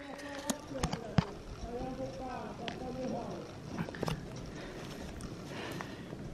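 Faint voices talking in the background, with a few sharp clicks scattered through.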